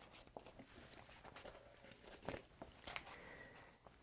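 Near silence with faint rustling and a few soft clicks of paper being handled as the sheets of a paper pad are turned over; the clearest click comes a little past two seconds in.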